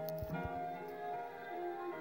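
A vinyl record playing on a turntable: music of held, sustained chords that change pitch every second or so, with a few short knocks about a third of a second in.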